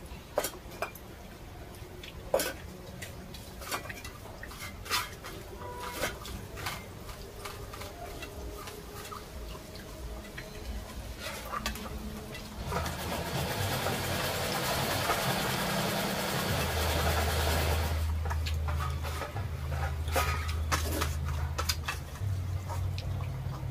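Scattered small clinks and taps of steel plates, bowls and tumblers as people eat rice by hand. A steady rushing noise rises about halfway through, lasts several seconds and then fades, with a low hum under it.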